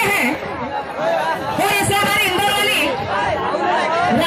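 Several voices talking over one another, amplified through stage microphones, with a hubbub of chatter behind.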